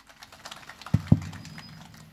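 Podium microphone picking up handling noise as the speaker settles at it: a light crackling rustle, with two dull thumps about a second in, a fraction of a second apart.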